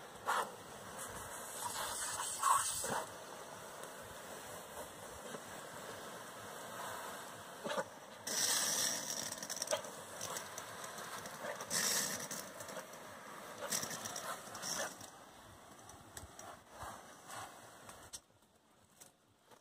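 Garden hose spray nozzle hissing out a fine mist of water, swelling into louder surges several times.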